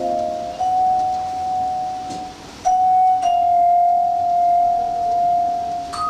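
Live jazz with a vibraphone ringing long, sustained notes that waver slightly in level, each held for a couple of seconds after a sharp mallet strike.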